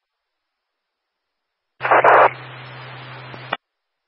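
Police scanner radio transmission with no voice: after a silent gap, the channel opens about two seconds in with a loud burst of static, then carries a steady hiss over a low hum before cutting off with a click about a second and a half later.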